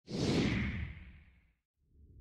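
Logo-intro whoosh sound effect: a sudden swoosh that fades away over about a second and a half. After a brief silence, a low rumble starts to build near the end.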